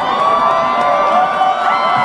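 Large audience cheering, with many high voices shouting over one another in a steady, unbroken din.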